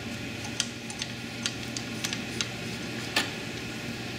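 Scattered light clicks and taps of hands working the feed roller and pushing the band into a banding machine's feed track, over a steady low hum.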